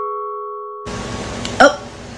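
The fading ring of a two-note ding-dong doorbell chime, the sign of a guest arriving at the door. It dies away over about the first second, and a voice says "Oh" near the end.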